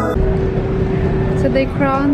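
Indoor public-space ambience: a steady hum under room noise, with indistinct voices starting about one and a half seconds in. A short tail of background music ends abruptly at the very start.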